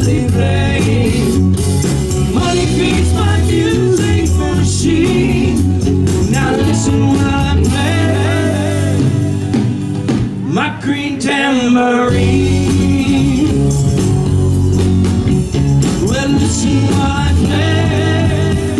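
Live rock band playing through a PA: electric guitar, bass and drum kit with a vocal melody over them.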